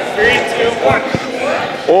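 Several people's voices chattering and calling out in a reverberant gymnasium, with a single thump about a second in from a ball landing on the wooden gym floor.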